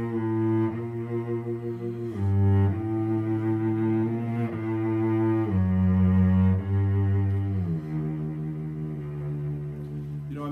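Solo cello played with the bow: a slow line of sustained low notes, each lasting a second or two and changing smoothly to the next, ending on a longer held note. Warm-up playing with continuous vibrato in the left hand.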